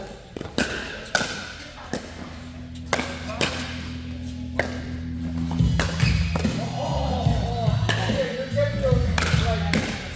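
Pickleball rally: sharp pops of paddles hitting the plastic ball, about one a second. Background music with a bass line comes in around the middle and grows louder.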